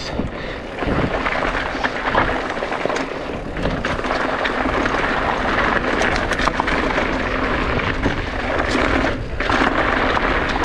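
Mountain bike rolling fast downhill on a dirt and loose-gravel trail: steady tyre noise over stones and wind rush, dotted with clicks and rattles. The noise dips briefly near the end.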